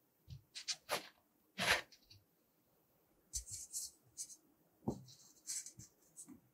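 Blue kinetic sand being handled by hand: a series of short, separate soft crunches and light thumps, with gritty crumbling hisses about halfway through and again near the end.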